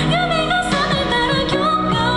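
A woman singing into a microphone over an instrumental backing track, holding wavering notes that bend up and down.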